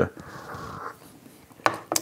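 A soft breathy noise, then a light sharp knock near the end as a small porcelain teacup is set down on a bamboo tea tray.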